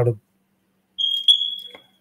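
A high electronic beep: one steady high-pitched tone that starts about halfway through and fades away over about a second.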